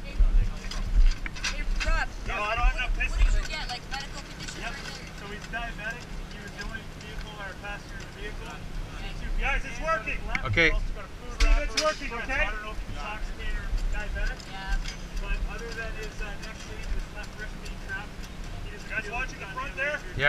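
An engine running steadily with a low hum, under muffled voices, with a couple of sharp knocks around the middle.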